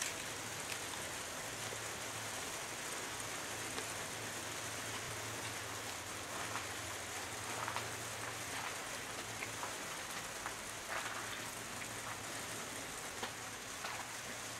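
A bite of habanero pepper being chewed with the mouth closed: a few faint soft clicks over a steady hiss and a low hum.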